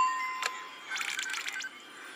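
Music and sound effects from a Santa video message: a sharp click with a ringing tone that fades within half a second, a second click, then a short run of tinkling clicks about a second in.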